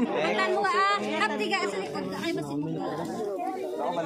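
Several people talking at once, their voices overlapping in a steady babble.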